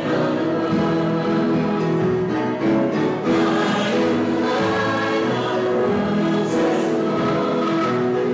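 Choir singing a hymn in sustained chords.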